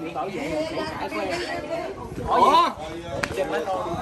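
People talking and chattering with overlapping voices, one voice rising loudly for a moment a little past the middle.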